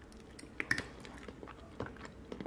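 A person takes a forkful of beans into the mouth and chews, with a few faint clicks of the metal fork in the first second and another near the end.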